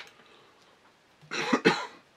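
A man coughs twice in quick succession about a second and a half in, after a faint click at the start.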